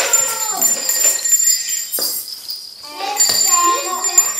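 Brief talk from a woman and children with the light, continuous jingling of small hand bells, and one sharp click about halfway through.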